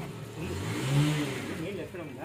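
A motor vehicle passes close by, its engine pitch rising and then falling as it goes, loudest about a second in, with people talking over it.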